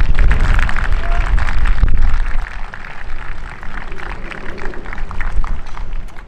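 Football players and team staff clapping their hands, with voices calling out. Wind rumbles on the microphone at first and eases after about two seconds.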